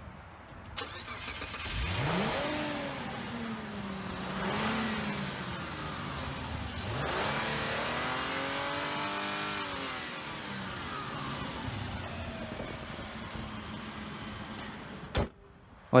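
Mitsubishi Pajero's 3.0-litre V6 petrol engine starting up, heard from the open engine bay. It catches about two seconds in with a quick rise in revs and settles to idle. It is revved once about seven seconds in, rising and falling back over a couple of seconds, then idles on until the sound cuts off abruptly near the end.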